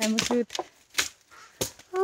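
A brief voice at the start, then a few sharp, crackling crunches about half a second apart: footsteps on dry leaf litter and twigs on the forest floor.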